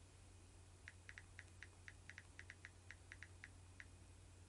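Faint, quick taps, about a dozen of them in three seconds at an irregular pace, over a low steady hum: fingertips tapping on a smartphone screen.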